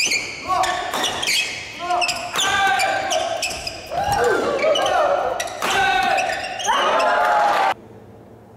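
Badminton rally on a wooden court in a large hall: sharp racket strikes on the shuttlecock mixed with squeaking shoe soles as players lunge and push off. The sound cuts off suddenly shortly before the end.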